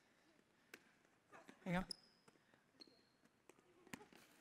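Near silence broken by a few faint, sharp slaps of hands on a volleyball during a rally, the loudest just before the end.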